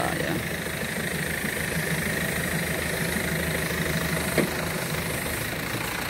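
Engine-driven water pump running steadily at a constant speed, with an even rumble, powering a hose sprayer.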